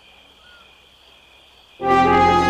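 Faint, steady chirring of crickets, then near the end a loud sustained brass chord of orchestral score music comes in suddenly.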